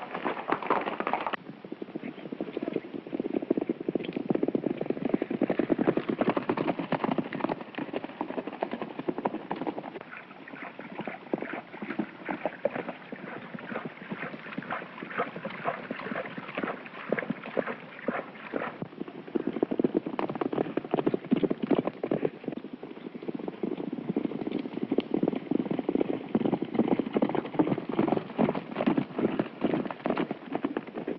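Horses galloping: a rapid, continuous clatter of hoofbeats from several horses, growing louder and quieter a few times as the shots change.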